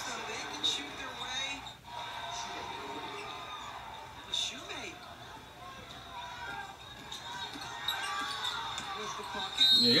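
Televised college basketball game playing at low level: faint commentators' voices over the sound of the court, with a basketball bouncing as it is dribbled.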